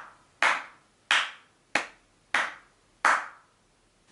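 Slow, evenly spaced hand claps, about one every two-thirds of a second, each ringing briefly before the next.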